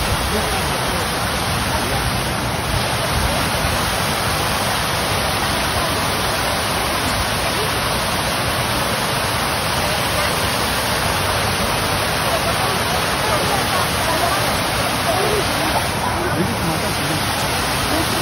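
Large park fountain with tall jets falling into its basin, a steady, dense rush of splashing water. Voices of people around it are faintly mixed in.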